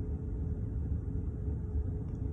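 Steady low rumble inside a car with the engine running, with a faint steady hum over it.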